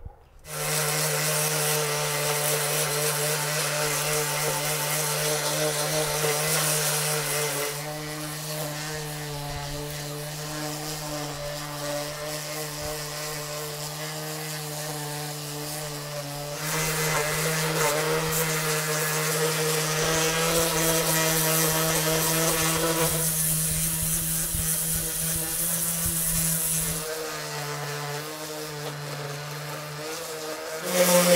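Handheld electric palm sander running steadily on a hand-hewn wooden beam, a constant motor hum. It gets quieter about a quarter of the way in and louder again a little past halfway, with smaller shifts near the end.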